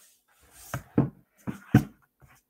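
Plastic food jars being handled and set down on a wooden table: four light knocks in about a second, the last the loudest.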